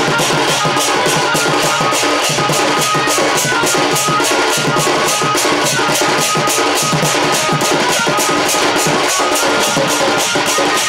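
Sambalpuri folk music with a double-headed barrel drum (dhol) played by hand. A crisp, even beat runs about four strokes a second, with a sustained melody line above it.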